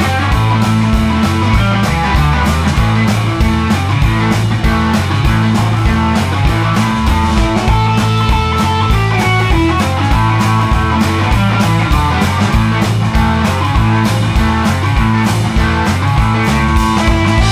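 Live rock band playing an instrumental passage: electric guitar over bass and drums keeping a steady beat.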